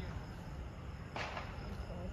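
Crickets chirping steadily in night ambience, with a short burst of noise a little over a second in.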